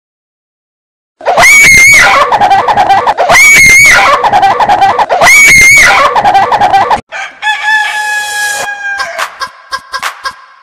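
After a second of silence, a very loud, high-pitched cry sounds three times, about two seconds apart, each a held shriek that falls away in pitch: a looped sound effect. About seven seconds in it cuts to electronic pop music with a beat.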